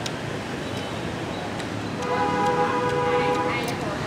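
Steady street background noise with a few light clicks. About halfway in, a loud held tone with several pitches sounds for nearly two seconds and then stops.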